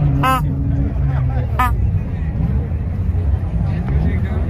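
Brass bulb horn squeezed twice: two short, bright honks about a second and a half apart, over crowd chatter and a low steady rumble.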